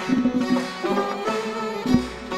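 Instrumental passage of Gilaki folk music from a live ensemble, led by a bowed string instrument over plucked strings, with a sharp percussive stroke near the end.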